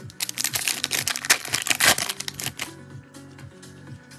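Foil trading-card pack torn open and its wrapper crinkled: a dense, loud crackle lasting about two and a half seconds, over background music.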